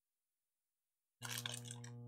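Silence for about a second, then a man chewing a mouthful of crunchy taco close to the microphone, faint crackly crunching over a steady low electrical hum.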